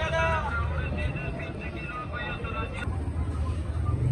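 Street ambience: a low, steady rumble of vehicle traffic, with people's voices in the first couple of seconds and a single click near the end.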